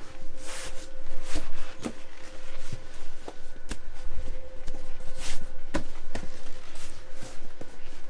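A vinyl-covered seat-back cushion being handled and pushed into place on a bench seat: irregular rubbing and rustling with scattered bumps and knocks. A faint steady hum runs underneath.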